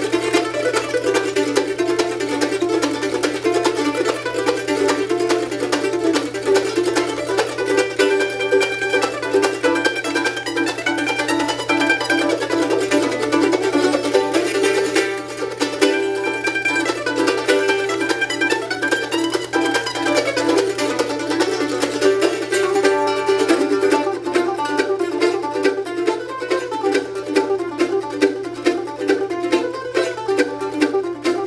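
Two handmade Nichols Road F-style mandolins played together in a bluegrass tune, with rapid picked notes.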